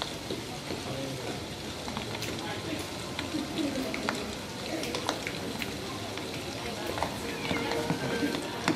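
Background ambience of a busy indoor public space: faint, indistinct voices with scattered small clicks and knocks. A steady tone sets in near the end.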